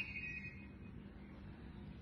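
Quiet room tone with a faint steady low hum and a faint high-pitched whine that fades out about a second in.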